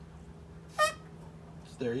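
A short, high squeak about a second in as compressed air escapes past a thumb held over the spark plug hole of a Predator 212 Hemi engine being turned over by hand, the sign of the piston coming up on its compression stroke. A steady low hum runs underneath.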